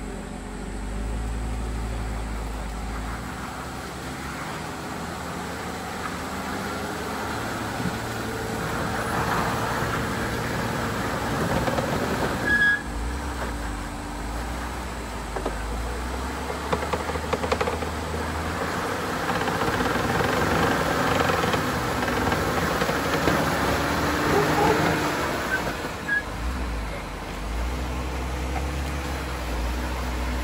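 Jeep Wrangler JL Rubicon engine running at low speed as the 4x4 crawls through deep ruts, its revs rising and falling under load. There is a single sharp knock about a third of the way in.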